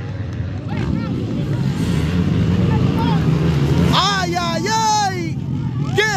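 Motocross dirt bikes running on the track: a steady low engine drone that swells in the middle. A man's voice calls out loudly about four seconds in.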